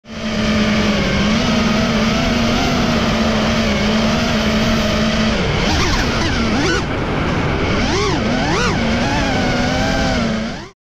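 FPV freestyle quadcopter's motors and propellers whining, recorded from the quad's onboard camera. The whine holds a steady pitch for about five seconds, then rises and falls sharply four or five times as the throttle is punched and cut, then settles steady again.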